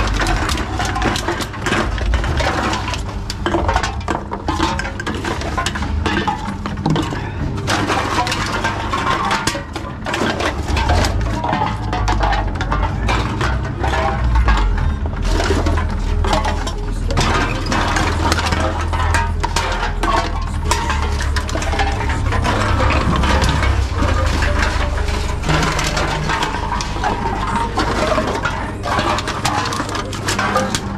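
Empty aluminium cans and plastic bottles clinking and clattering as they are picked out of a wire shopping trolley and fed one at a time into reverse vending machines, over a steady low hum from the machines.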